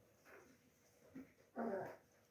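A small dog gives one short, faint cry near the end, with a few softer sounds before it.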